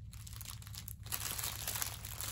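Plastic packaging of a diamond painting kit crinkling as it is handled. The crinkling gets denser and louder about a second in.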